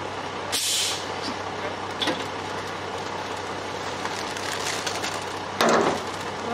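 Ready-mix concrete truck running steadily while concrete slides down its chute. A short hiss of air comes about half a second in, and a louder rush of noise near the end as the chute is swung over.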